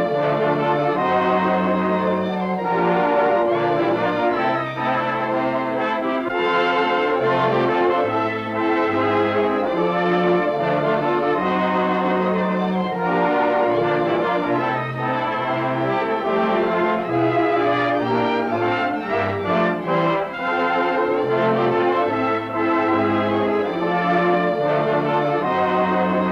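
Orchestral film score for the opening titles, with brass prominent over a moving bass line.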